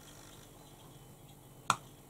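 Faint room tone broken by one short, sharp click near the end.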